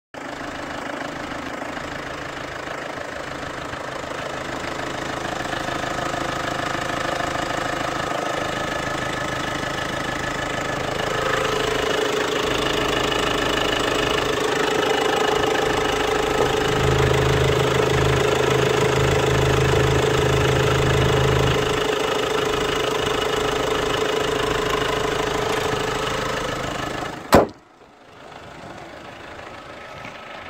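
The 2.2-litre CRDi four-cylinder diesel engine of a 2009 Hyundai Santa Fe idling steadily, heard close up under the open hood. It grows louder about a third of the way in. Near the end a single sharp click is followed by the engine sounding much fainter.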